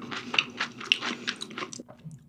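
Close-miked chewing with the mouth closed: a quick run of small wet clicks and smacks, several a second, stopping shortly before the end.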